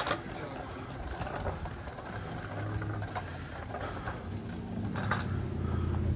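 A motor vehicle's engine running nearby on the street, a steady low hum that grows louder toward the end.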